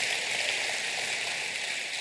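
Congregation applauding in a large hall: a steady, even patter of many hands clapping.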